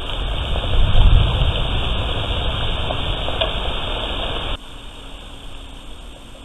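Wind buffeting an outdoor trail camera's microphone, with grass blades brushing close by: a noisy rumble that swells about a second in. It cuts off sharply after four and a half seconds to a quieter steady hiss with a faint hum.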